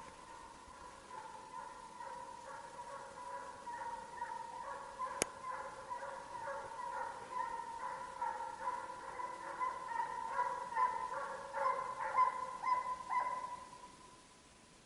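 Hunting horn blown in one long, steady note broken into quick rhythmic pulses, growing louder toward the end and stopping just before it: the signal to call the hounds in. A single sharp click about five seconds in.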